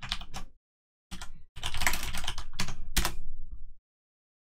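Typing on a computer keyboard: a short run of keystrokes, a brief pause about a second in, then a longer quick run that stops shortly before the end, as a terminal command is typed in and entered.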